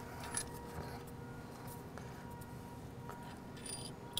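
Faint metallic clicks and taps from a serpentine belt tensioner and belt being handled on a 6.0L Power Stroke diesel engine, with a few scattered ticks and a short clinking run near the end.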